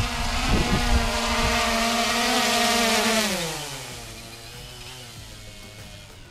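Xiaomi Mi Drone quadcopter's propellers and motors whirring steadily while it carries a smartphone taped beneath it. About three and a half seconds in, the pitch glides down and the sound drops to a quieter whir as the motors throttle down, with the drone held in a hand.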